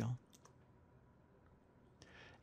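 Near silence: room tone after the end of a spoken sentence, with a few faint clicks shortly after the voice stops.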